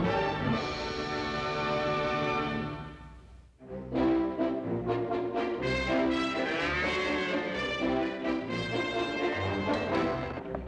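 Orchestral television score led by brass: a held chord fades out about three seconds in, and a new orchestral passage starts about half a second later.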